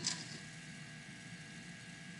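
Quiet room tone with a faint steady hum, opening with one brief soft click.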